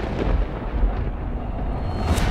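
A deep, steady, thunder-like rumble: a dramatic sound effect laid under title cards.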